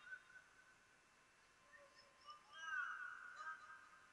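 Near silence: faint room tone, with a brief faint sound that rises and falls in pitch about two and a half seconds in.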